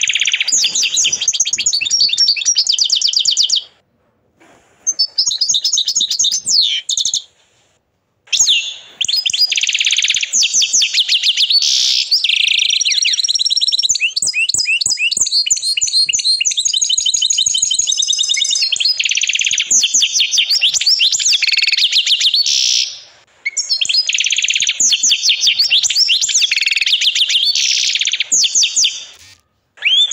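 Agate canary singing in high-pitched phrases of rapid trills and rolls, broken by short pauses. The longest phrase runs about fifteen seconds, from around eight seconds in.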